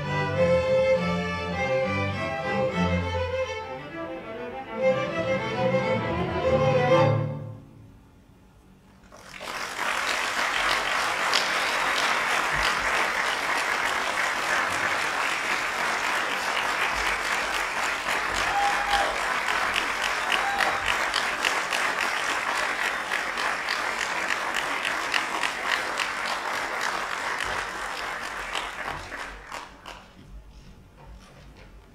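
A school string orchestra of violins, violas, cellos and double basses plays the final bars of a piece, ending on a loud chord about seven seconds in. After a short pause, an audience applauds steadily for about twenty seconds.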